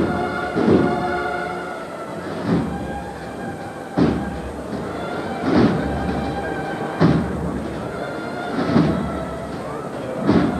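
A processional band playing a slow march, with heavy drum strokes about every second and a half under held notes.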